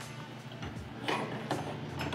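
A few light metallic clicks and rattles of bolts and clamp hardware being handled and fitted into a steel cargo rack's tray tab and roll-cage clamp, with faint background music.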